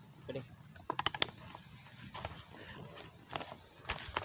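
Scattered sharp clicks and crackles of dry bamboo stakes and dead leaves being handled and disturbed, a quick cluster about a second in and a few more near the end.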